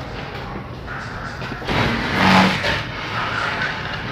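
Road vehicle noise, a steady rumble and hiss that swells louder for about a second near the middle.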